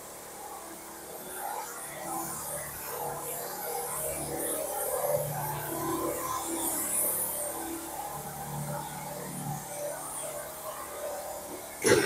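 Music playing from a shop radio, fairly quiet and heard across the room. A cough comes right at the end.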